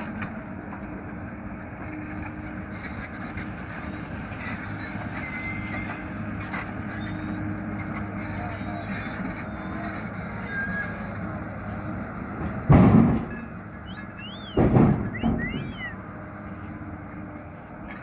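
Kato HD820 excavator's diesel engine running steadily. About two-thirds of the way in come two loud thuds about two seconds apart, as old wooden railway sleepers drop from its bucket into the steel body of a dump truck.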